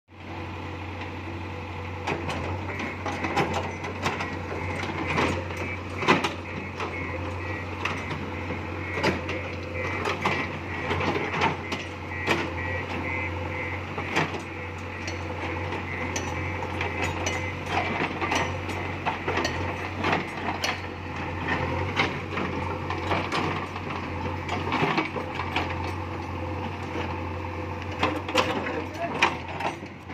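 JCB 3DX backhoe loader's diesel engine running steadily while its rear backhoe bucket digs into rubble and soil, with frequent irregular knocks and clanks of the bucket, linkage and stones.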